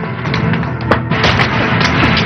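Loud, tense action-film soundtrack music, with a few sharp bangs cutting through it about a second in and again near the end.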